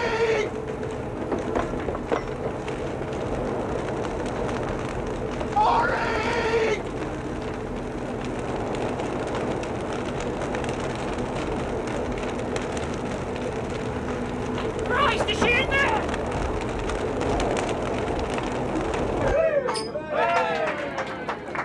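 A boat fire burning with a steady rushing noise and a low hum. A voice calls out three times over it. The fire noise cuts off just before the end.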